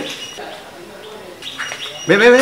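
Small birds chirping in the background: short, thin, high whistled notes repeated several times.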